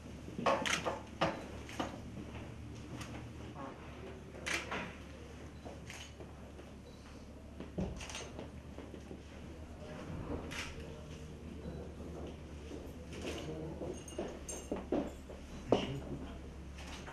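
Room tone in an office: a steady low hum with scattered light knocks and clicks from handling objects, and faint murmured voices, mostly near the end.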